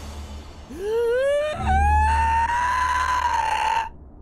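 A long, high-pitched scream that climbs sharply for about a second, then is held at a high pitch until it cuts off just before the end, over a low steady drone.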